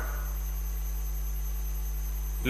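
Steady low electrical hum with a few faint overtones, typical of mains hum in a microphone or public-address feed.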